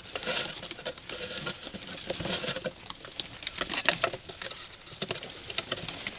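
Young fancy rats' claws scrabbling on a cardboard box as they climb over it and through its hole: an irregular patter of light scratches and taps.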